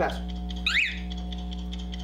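A brief high squeak that rises and falls once, less than a second in, over a steady electrical hum.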